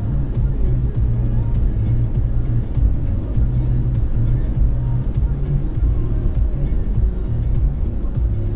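Steady road and engine rumble inside a car cabin at highway speed, with the car radio playing underneath.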